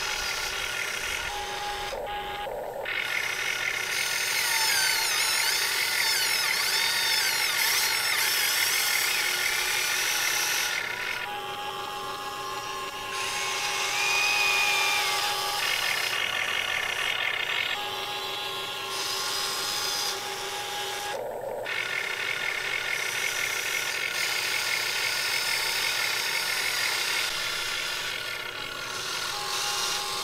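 Electric motors and plastic gearboxes of a radio-controlled model excavator whining as it digs and swings its boom and bucket. The whine changes pitch and tone every few seconds as different motors start and stop, with gliding pitch where a motor speeds up or slows down.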